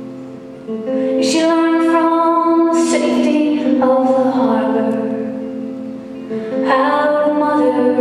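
A woman singing a slow folk song in long held notes, accompanied by her own acoustic guitar.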